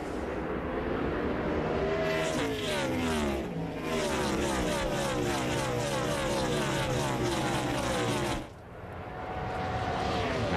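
A pack of NASCAR Cup stock cars with V8 engines running at speed. Many engine notes overlap and slide down in pitch as the cars go by. The sound dips briefly near the end, then rises again.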